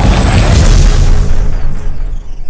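Intro sound effect: a loud, deep boom with a heavy rumble and crackle, loudest about a second in and starting to fade near the end.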